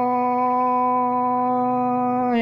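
A singer holding one long, steady note on the vowel of a drawn-out 'Hà ô' call in Vietnamese Thai khắp folk singing, with a faint low accompaniment underneath.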